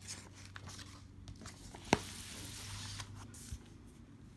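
Paper workbook pages being turned and handled, with light rustling and crinkling, a sharp click about halfway through, and a second or so of paper sliding and rustling after it.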